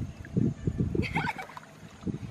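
Shallow muddy water splashing and sloshing in a quick run of strokes as people wade and scoop in it, with a short, high, wavering call about a second in.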